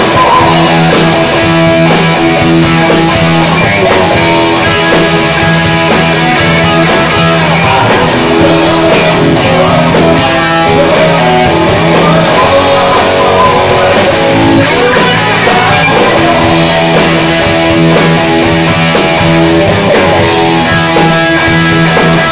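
Live rock band playing loudly, led by electric guitars, with no break in the music.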